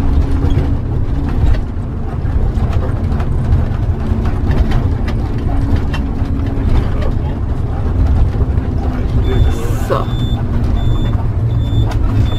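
A large motorhome's engine running with a steady low rumble and road noise, heard from inside the cab while it drives slowly through town. Near the end a faint high beep starts repeating about once a second.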